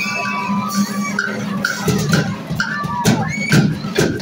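School drumline playing a loud, steady beat, with short pitched notes over the drums.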